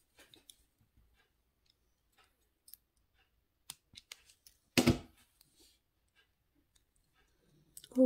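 Faint clicks of copper wire being handled, then a sharp snap about five seconds in as flush cutters clip off the end of the wrapping wire.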